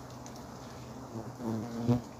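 Giant honey bees (Apis dorsata) humming steadily at their nest. In the last second a single bee buzzes close to the microphone, growing louder to a peak near the end.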